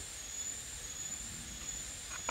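Steady, quiet outdoor background noise: a low rumble with a thin, steady high-pitched tone above it and no distinct events.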